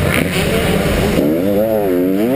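KTM 125 SX two-stroke motocross engine under riding load: for about the first second its note is buried in a rough rushing noise, then it comes through clearly, the revs dropping and then climbing again.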